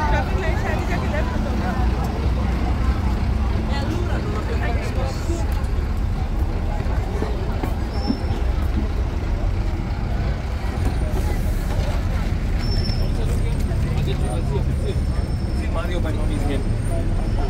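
Busy city street ambience: a steady low rumble of road traffic, buses included, under the chatter of a crowd of pedestrians.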